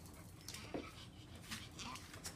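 Small dogs whimpering faintly, twice and briefly, with a few light clicks of their claws on the hard floor.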